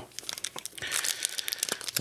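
Plastic foil wrapper of a pack of hockey cards crinkling and tearing as it is opened by hand. It makes a run of short crackles, denser just past the middle.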